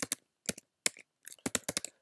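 Computer keyboard typing: a scatter of separate key clicks with short gaps, then a quicker run of keystrokes in the second half.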